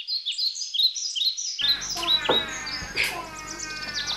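Small birds chirping rapidly: a quick run of short, high, falling chirps, several a second. About a second and a half in, a low outdoor background hum comes in under them.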